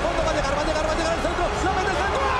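Excited football commentator's voice calling a shot on goal over steady stadium crowd noise.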